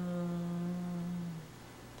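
A woman's drawn-out hesitation sound between words, one held vocal tone at a steady pitch lasting about a second and a half, then a short pause.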